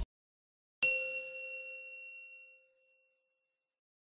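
A single bell-like chime sound effect about a second in, one clear ding that rings out and fades over about two seconds. It is the notification-bell ding of a subscribe-and-press-the-bell animation.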